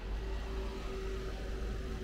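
Street noise: a low rumble that sets in suddenly at the start and holds, over a steady hum.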